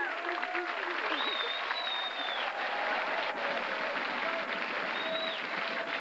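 Live audience applauding at the end of a comedy sketch, with voices in the crowd. A shrill whistle is held for over a second, and a shorter one comes near the end.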